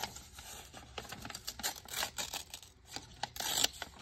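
Crisp paper rustling and crackling as hands pick up and shuffle craft papers, in short irregular bursts, with a louder crinkle about three and a half seconds in.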